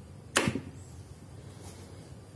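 A wooden stick used to twist a rope bundle wound round a wooden frame is let go and springs back with one sharp snap about a third of a second in.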